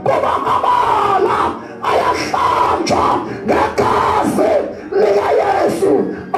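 Loud, distorted shouting through a PA system, in four bursts of about a second each with short breaks between them.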